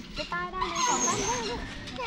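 Voices of a woman and young children talking, with a brief thin high squeal about a second in.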